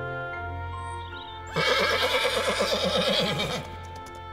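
A horse whinnies once, a loud call of about two seconds with a wavering pitch, starting about one and a half seconds in, over soft orchestral music.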